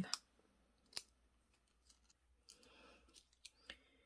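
Near silence with faint handling noise: a sharp click about a second in, a soft rustle, and two small clicks near the end, from fingers bending the wire leads of small electronic components and pressing them into a paper circuit card.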